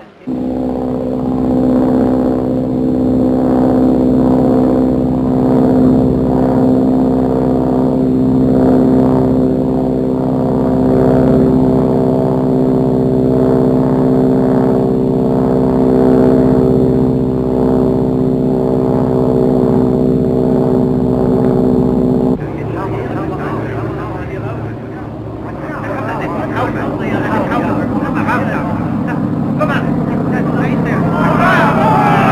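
Biplane aircraft engines droning steadily at one unchanging pitch. About three-quarters of the way through, the sound cuts to a rougher, noisier engine sound.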